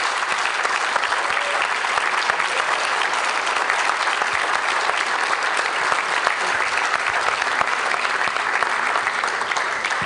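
Church congregation applauding: many hands clapping together, loud and steady.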